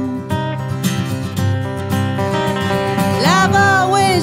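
Acoustic guitar strumming a country-song accompaniment between vocal lines. A woman's singing voice comes back in about three seconds in.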